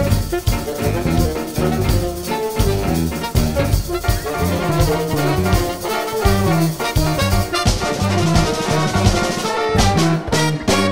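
Jazz big band playing a contemporary bossa nova: brass and saxophone sections over piano, bass and drums. Near the end the band plays short accented ensemble hits.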